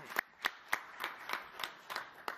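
Light applause from a few people: sharp, fairly regular hand claps about three a second.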